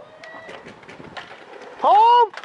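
A few faint, sharp pops from paintball markers firing across the field. Near the end comes a loud, drawn-out shouted call from a player.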